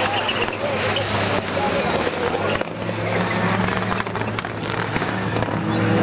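Several rallycross cars racing, their engines running hard with a steady drone and frequent sharp cracks from the exhausts.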